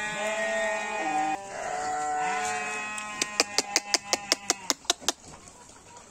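A Garut ram bleating in two long calls. The second call ends in a run of rapid sharp clicks, about seven a second.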